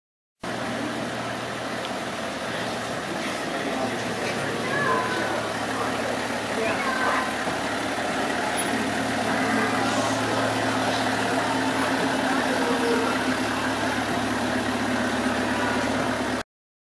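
Tourist road train's engine running with a steady low drone as the train moves slowly past, getting slightly louder over the stretch, with people's voices around it.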